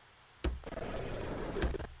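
A short burst of a bar scene's soundtrack playing back from the editing timeline: it cuts in abruptly about half a second in with a sharp click, runs as a noisy wash for about a second and a half, and stops abruptly again. The playback is stuttering and will not run smoothly.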